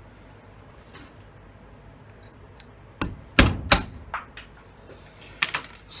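Hammer blows on metal at a bench vise, driving at the pins of a failed resin knife handle: three sharp strikes about three seconds in, then a couple more near the end.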